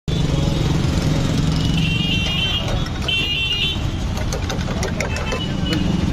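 Street traffic with a motor vehicle engine running close by as a steady low rumble. Two short high-pitched sounds come about two and three seconds in. Light clicks and clinks of plastic cups being handled at the stall follow in the second half.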